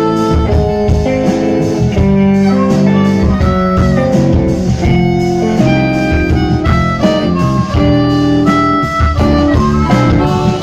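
Live blues band playing: a harmonica cupped against a handheld microphone plays sustained notes over electric bass and guitar, steady and loud.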